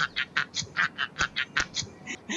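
Men laughing hard in quick, breathy bursts, about five a second.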